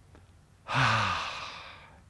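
A man's long, audible sigh: a deep breath out that starts with a short falling voiced note and fades over about a second, taken as one of the deep breaths counted off in Downward Dog.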